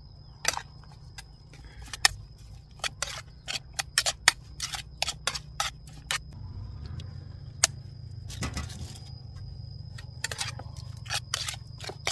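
A metal spoon clinking and scraping against a metal mixing bowl while raw minced beef is stirred and mixed, in irregular sharp clicks with a wetter, noisier scrape about eight and a half seconds in.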